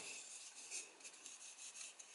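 Faint rubbing and scraping of fingers handling a round plastic speaker cover with a fabric-covered face.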